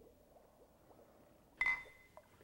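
Faint room tone, then about one and a half seconds in a single short, sharp strike with a ringing tone that dies away within half a second.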